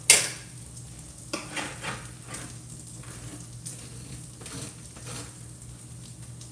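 A metal tray of roasted spaghetti squash halves clatters down on the stovetop, the loudest sound, right at the start. After that, sausage sizzles in a cast-iron skillet while a fork clicks and scrapes lightly against the squash.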